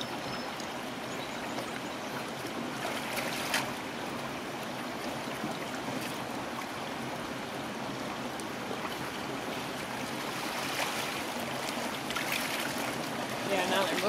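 Steady rush of flowing water, with a few light splashes of dip nets scooping trout fingerlings.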